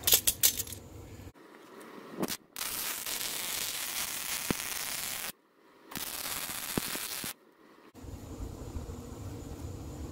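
Wire-feed welder arc crackling and hissing steadily in two welds, the first about three seconds long and the second about a second and a half, as a caster's steel mount is welded to a cart frame. A few clicks come about half a second in, before the first weld.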